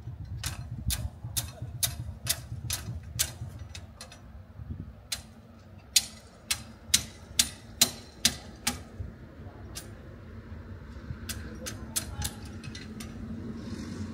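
Hammer blows on a building job, a quick run of sharp knocks about two or three a second, loudest in the middle, then a few scattered knocks near the end, over a low rumble.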